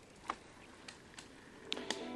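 A few faint, sharp clicks, spaced irregularly over a quiet background. Soft music begins right at the end.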